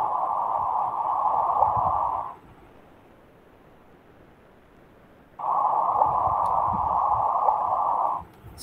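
Audio rendering of the first LIGO gravitational-wave detection, the black-hole merger "birth cry", played over a video-call link. It comes as two stretches of narrow-band hiss, each a few seconds long, with a pause of about three seconds between them.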